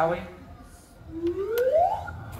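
A single whistle-like tone sliding smoothly upward in pitch over about a second, starting about halfway through, after a short quiet pause.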